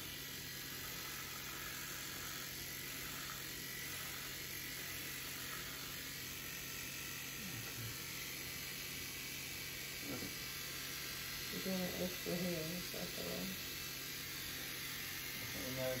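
Electric hair clippers running with a steady, even hum as they trim off a man's beard.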